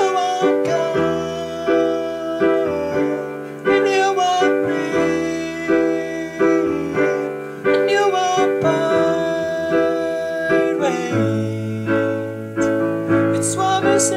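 Solo digital stage piano playing a slow piece: sustained chords struck about once a second under a melody line on top, with a low bass note coming in near the end.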